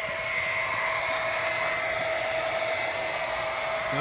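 Harbor Freight 1500-gallon-per-hour electric utility pump running steadily with a constant whine, pumping rain-barrel water out through a garden hose, with the hiss of the water spraying from the hose.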